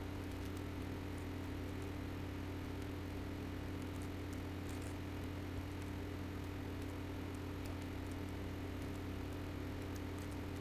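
Steady low hum with a faint hiss and a few faint ticks: background noise with no distinct event.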